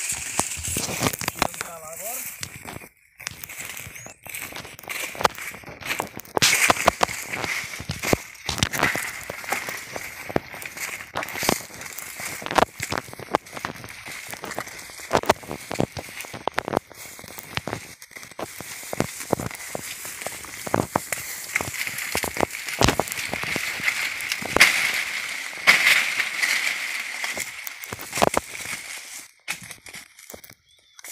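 Footsteps through dry fallen banana leaves and undergrowth: irregular crunching and crackling of dry leaves underfoot.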